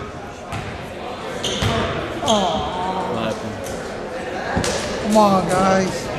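A basketball bouncing a few times on a gym's hardwood floor, with people calling out in the gym; the loudest call comes near the end.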